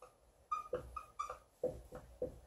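Dry-erase marker squeaking on a whiteboard as letters are written: a quick run of short squeaks starting about half a second in.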